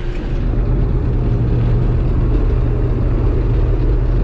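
Combine harvester running, heard from inside the cab: a steady low drone of engine and machinery while harvesting.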